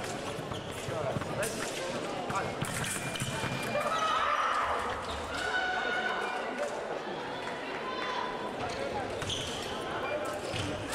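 Voices and shouts echoing in a large sports hall, over a run of sharp knocks and fencers' footfalls on the piste.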